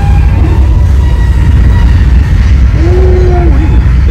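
Loud, steady low rumble of a studio-tour tram moving through a dark, enclosed set, with faint steady tones above it. About three seconds in comes a brief held voice-like sound.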